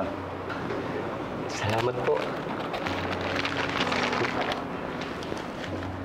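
A brief spoken phrase, then rustling handling noise, with a low sustained tone coming in about three seconds in.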